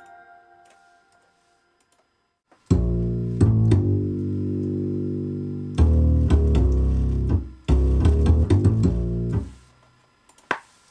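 Deep plucked notes from a software upright bass instrument, entering after about two and a half seconds of near silence. The notes are held for a second or more each, in three phrases with brief gaps between them.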